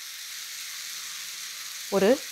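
Onion and tomato masala sizzling steadily in a hot pan (kadai), an even hiss.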